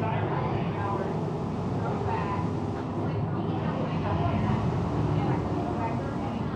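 Steady low mechanical rumble, with indistinct voices talking over it.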